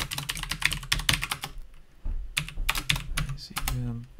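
Typing on a computer keyboard: quick runs of keystrokes, with a short pause about halfway through.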